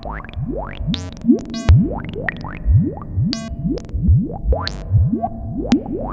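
Modular synthesizer patch played through a Serge Variable Q VCF: a run of short notes, each swooping quickly upward in pitch, about three a second, over a steady low drone. A few brighter pinged accents come from gates fed into the filter's trigger input.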